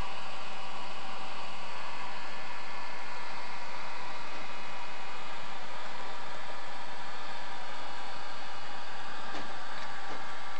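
Model steam locomotive (BR 18 412) running along its track: a steady whirring of the electric motor and gearing with the rolling of the wheels on the rails.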